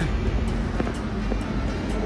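Steady low rumble of city street traffic, with music faintly under it.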